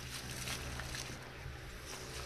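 A metal-bladed carpet scraper pushed across a soaked wool rug, driving dirty water off it in a wet swishing rush, over a steady low hum.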